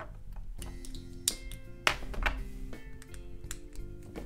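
Background music playing, with several sharp clicks of plastic LEGO bricks being handled and pressed together; the two loudest come about one and two seconds in.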